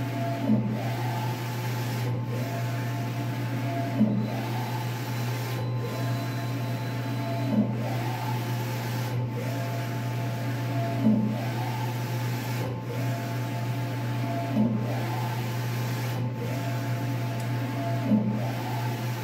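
Large-format inkjet printer with an Epson XP600/DX11 printhead printing, its carriage shuttling across the bed in a steady cycle about every 1.7 s with a motor whine that rises and falls on each pass. A louder knock comes about every three and a half seconds, over a steady low hum.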